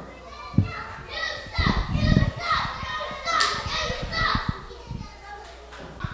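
Children in the ringside crowd shouting and yelling in high voices, with heavy thuds of wrestlers hitting the ring mat about half a second in and again around two seconds in.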